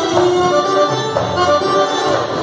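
Live Arabic ensemble music for belly dance: a melody of held notes over a steady hand-drum rhythm, played by keyboard, darbuka and other instruments.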